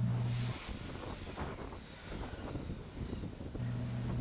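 Faint outdoor background with a distant aircraft passing, its high whine slowly falling in pitch.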